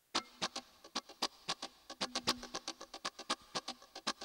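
Quiet, choppy muted electric guitar strums in a quick rhythm of about five short strokes a second, with a brief low held note in the middle: the sparse opening of a disco backing track before the full band enters.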